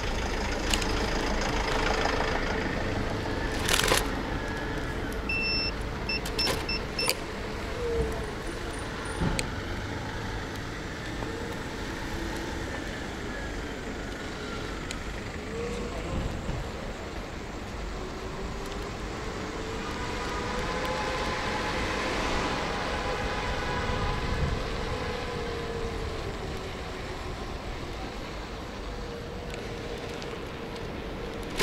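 City street traffic: cars and vans passing, one engine note rising and falling as a vehicle goes by near the end. A few short electronic beeps sound about five to seven seconds in.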